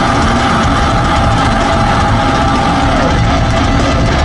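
Metal band playing live: distorted guitars and bass in a loud, dense, sustained wall of sound over a low rumble.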